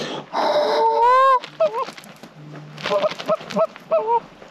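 Canada goose honks and clucks: one loud, drawn-out honk that rises in pitch about a second in, then a series of short clucking notes.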